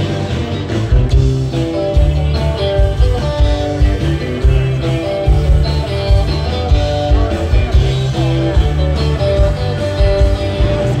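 Live rock band playing an instrumental passage through the stage PA: an electric guitar lead with held notes over bass and a steady drum beat.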